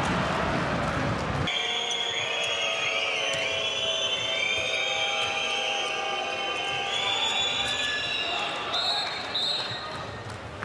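Handball game sound in a packed arena: loud crowd noise at first, then after an abrupt change about a second and a half in, the ball bouncing on the court and players' shoes squeaking, over a din of high, drawn-out tones from the stands.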